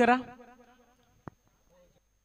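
A man's voice holding out the last syllable of a word, fading away over about a second, then a single short click and a near-silent pause.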